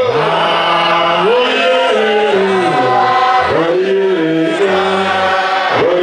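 A church congregation singing together in harmony, many voices holding long notes that glide from one pitch to the next.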